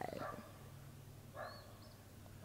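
Quiet background: a faint steady low hum, with a soft, brief rustle about one and a half seconds in.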